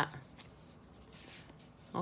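Faint rustling and light clicks of tarot cards being handled and drawn from a deck.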